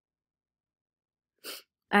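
Silence, then one short quick intake of breath about one and a half seconds in, just before a woman starts speaking.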